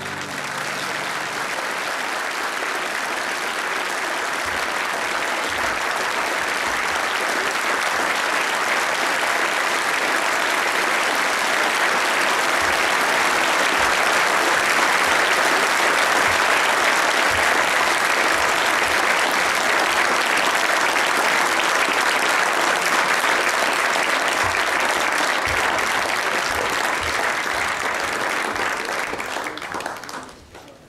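A large theatre audience applauding steadily, building a little through the middle and tailing off near the end.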